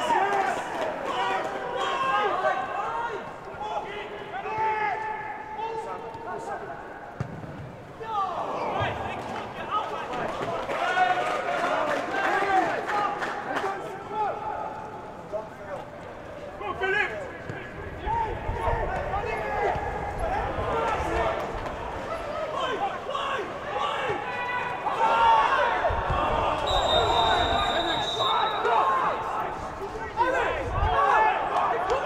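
Football match sound with no crowd: players shouting to each other across the pitch over the occasional thud of the ball being kicked. Near the end a referee's whistle blows once, held for about a second and a half, for the offside the assistant referee is flagging.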